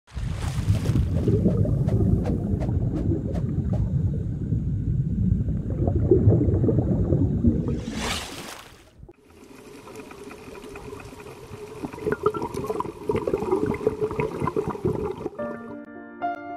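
Underwater sound effect: a loud low rumbling, bubbling water noise, swept off by a sharp whoosh about eight seconds in. A quieter underwater ambience with faint wavering tones follows, and soft piano music begins near the end.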